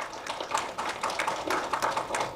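An audience applauding with many separate, irregular claps.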